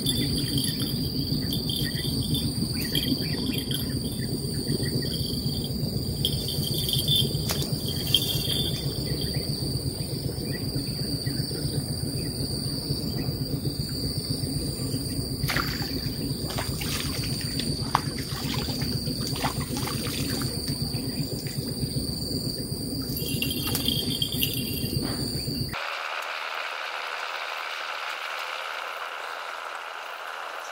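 A steady chorus of insects calling, heard as a continuous high buzz over a low background rumble, with a few faint clicks. About 26 seconds in the sound changes abruptly and the rumble drops out.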